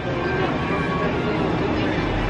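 Steady outdoor background din: distant crowd chatter over a low, even hum.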